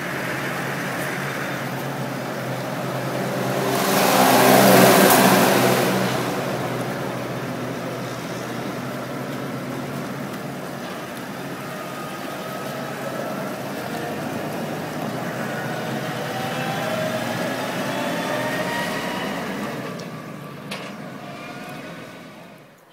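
Farm tractor engine running under load as it pulls a Joskin slurry tanker, loudest for a couple of seconds about four seconds in with a rushing noise, then its pitch rising steadily as it gathers speed.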